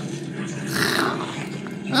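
A person voicing a zombie's low, rough growl, with a breathy snarl near the middle.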